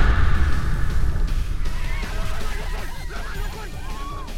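Horror-trailer sound design: a deep low rumble that fades slowly over the few seconds, under a dense chorus of short, quick chirping or honking calls.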